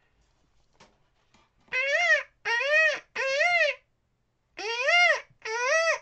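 A man imitating a peacock's call with his voice: five loud calls, each rising then falling in pitch, in a run of three and then a run of two, starting a little under two seconds in.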